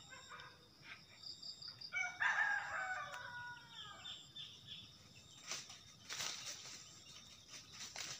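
A rooster crowing once: a single call of about two seconds, starting about two seconds in and falling slightly in pitch toward its end.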